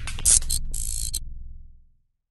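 Glitchy logo-sting sound effect: a run of rapid clicks and two short bursts of hiss over a low bass drone, fading out near the end.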